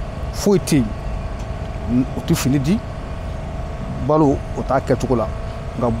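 A man speaking in Bambara in short phrases with pauses, over a steady low rumble of street traffic.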